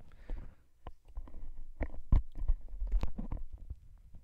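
Headset microphone handling noise: irregular rustling, scraping and low bumps as the mic and its cable are worked free of tangled hair, heavier from about halfway through.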